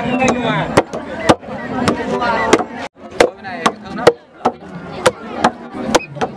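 Long-handled wooden mallets pounding steamed sticky rice in a wooden trough, two pounders striking in turn at about two blows a second. Voices are heard between the blows.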